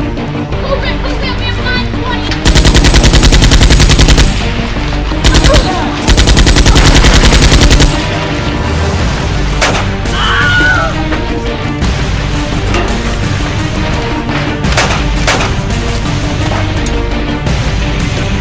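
Automatic gunfire in three rapid bursts: a long one about two and a half seconds in, a short one a second later, then another long one, each loud and fast-repeating, over background music.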